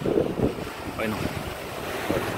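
Ocean surf washing against rocks, with wind buffeting the microphone.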